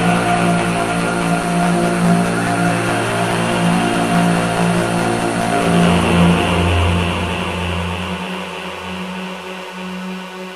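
Analog synthesizer music in a minimal-wave/coldwave style: sustained droning synth tones over a low bass note. It gradually fades out in the second half as the track ends.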